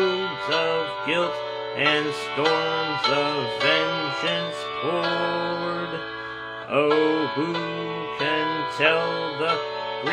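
A man singing a slow hymn melody solo, one held syllable after another.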